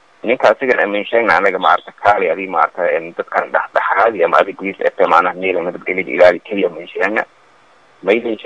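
A man speaking steadily into a handheld microphone, pausing briefly near the end.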